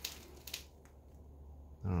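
Quiet room tone with a faint low hum and a single soft click about half a second in; a man's voice starts near the end.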